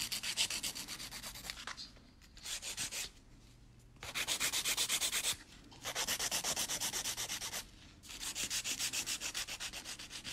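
Nail file rubbing across a gel nail in quick, even, rhythmic strokes, smoothing the sidewalls and the underside of the free edge. The filing comes in four short runs with brief pauses between them.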